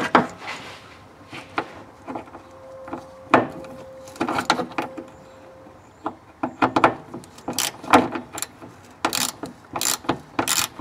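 Socket ratchet wrench clicking in short bursts as the bolts of a transfer case shift lever mount are worked loose, with a few sharper metal knocks among the clicks.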